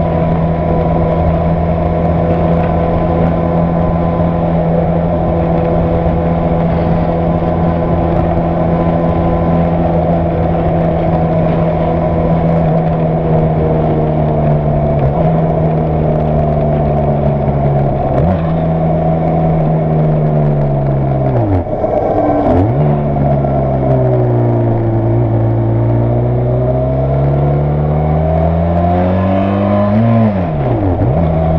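Benelli TRK 502's parallel-twin engine and exhaust under way, recorded from the bike. It holds a steady note for the first dozen seconds, then the pitch falls as the bike slows, broken by a few brief sharp dips in revs, and climbs again as it accelerates near the end. Wind rush on the microphone sits underneath.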